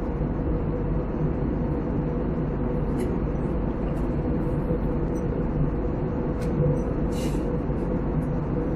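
Airliner cabin noise in cruise: a steady drone of engines and airflow with a constant hum. A few faint ticks, and a brief hiss about seven seconds in.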